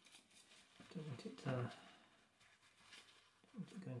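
Faint, scratchy scrubbing of a toothbrush over a printed circuit board, brushing solder flux off the joints with isopropyl alcohol. A short murmured voice comes in partway through and again near the end.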